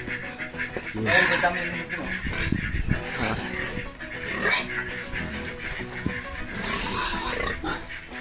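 Pigs in a pen making noise, with a louder stretch near the end.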